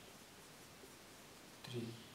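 Faint scratching of a felt-tip marker writing on a whiteboard.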